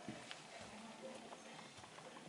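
Faint footsteps, a few sparse, irregular taps on a hard floor, over quiet room tone.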